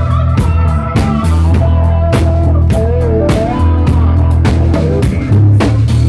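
Live blues-rock band playing loud: electric guitar lines over bass guitar, keyboards and a drum kit keeping a steady beat.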